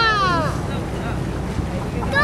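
Steady low rumble of a cruise boat's engine under way, with wind buffeting the microphone; a voice trails off with a falling pitch in the first half second.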